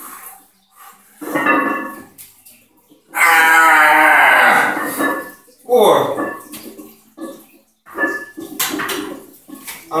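A man grunting and breathing forcefully under a heavy safety-squat-bar squat. A loud, strained vocal groan lasting about two seconds sits in the middle, with shorter grunts and hard breaths before and after it.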